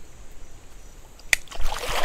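Creek water at the bank's edge, lapping faintly at first, then splashing and sloshing from about a second and a half in, just after a single sharp click.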